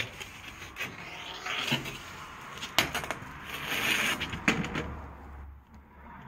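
An aluminium rail being handled and shifted among timber: a few sharp knocks, one about three seconds in and another about a second and a half later, with scraping and rustling between.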